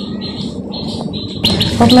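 A small bird chirping in short, high notes, repeated a few times a second; a woman's voice comes in near the end.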